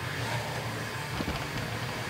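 A steady low rumble of background noise, without speech.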